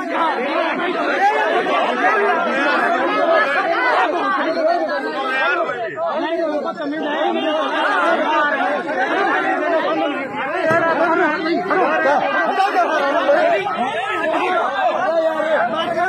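Several people talking over one another at once: continuous overlapping chatter with no clear single voice.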